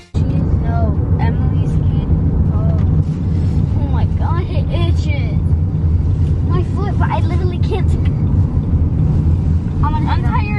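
Steady low road and engine rumble heard inside a moving Nissan's cabin, with faint voices now and then.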